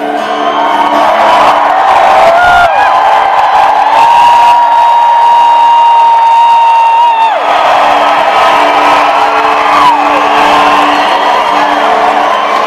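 Acoustic guitars ringing on a held chord while a concert crowd cheers and whoops, with one long high call held for about three seconds in the middle.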